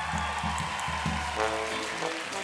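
A live band starts a song's intro with low, steady bass notes. A sustained chord from a pitched instrument comes in about one and a half seconds in, over the tail of audience applause.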